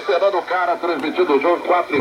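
A broadcast voice from a shortwave AM station comes out of an Icom communications receiver as it is tuned onto 11780 kHz, Radio Nacional da Amazônia from Brazil. The voice sounds thin and lacks bass.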